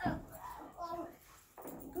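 Small terrier whining in short, pitched calls, the whines of an over-excited dog, with a person's brief "Oh" at the start.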